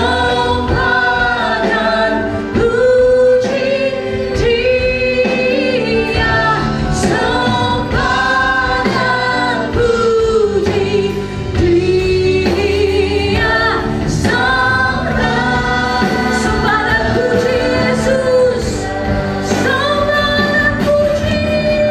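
A worship team of male and female voices singing an Indonesian Christian praise song in harmony, with a woman leading, over instrumental accompaniment.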